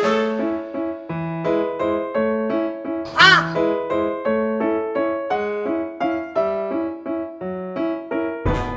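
Light electric-piano background music with evenly paced notes. A little past three seconds in, a brief cartoonish animal-call sound effect sounds over it and is the loudest moment.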